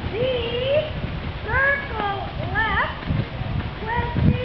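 Indistinct talking in a fairly high voice close to the microphone, in short phrases, over a steady low rumble of wind on the microphone.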